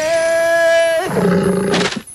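Wild-animal sound effects: a high call rises and is held steady for about a second, then a lower roar follows.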